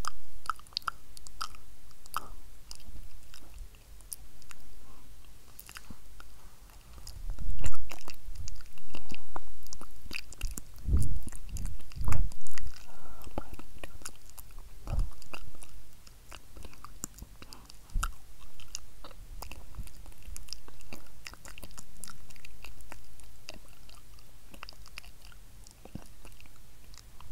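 Close-miked inaudible whispering: wordless mouth movements full of wet lip and tongue clicks, with a few soft low thumps in the middle.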